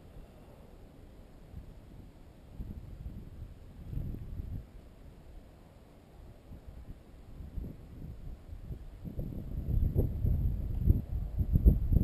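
Wind buffeting the microphone: a low rumble that swells and fades in gusts, then picks up strongly about nine seconds in as the breeze returns after a lull.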